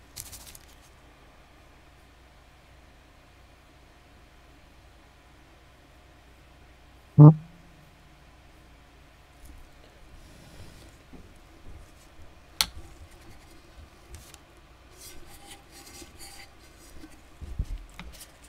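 Quiet room tone with small handling sounds: light clicks, taps and rustles as a tumbler, paintbrush and ink bottles are handled on a paper-covered mat. One short, much louder thump about seven seconds in, and a sharp click a few seconds later.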